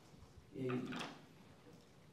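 Speech only: a man's short hesitant "uh", with a faint click about a second in, then quiet room tone.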